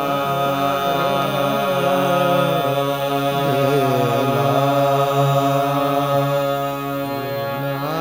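Qawwali: a male lead voice singing a slow, free, ornamented line that winds up and down over a steady harmonium drone, with no drum beat.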